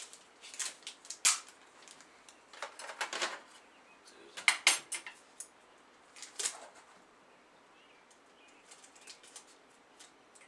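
Paper rustling and crinkling as a package is wrapped by hand, in short irregular spells. The sounds are loudest about a second, three seconds and four and a half seconds in, and thin out to faint rustles in the second half.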